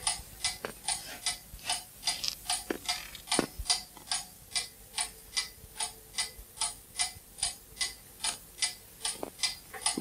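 Mechanical clock ticking steadily, about three ticks a second.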